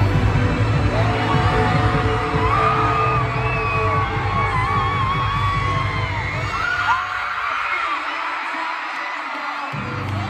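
Live pop music over a stadium concert sound system, with the crowd singing along. The heavy bass drops out about seven seconds in, leaving mostly voices, and comes back just before the end.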